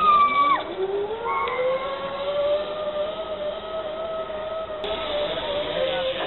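Zip line trolley pulleys running along the steel cable: a whirring whine that rises in pitch as the rider picks up speed over the first two seconds, then holds nearly steady. A short high-pitched call is the loudest sound, right at the start.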